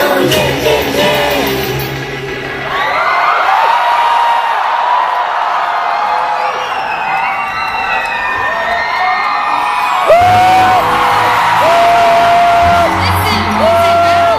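Live pop concert in an arena: a girl group singing over an amplified backing track, with crowd cheering and screams in the hall. The bass drops out about two seconds in, leaving the voices and the crowd, then comes back in about ten seconds in.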